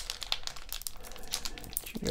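Foil baseball card pack crinkling in the hands as it is worked open: a quick, irregular run of crinkles.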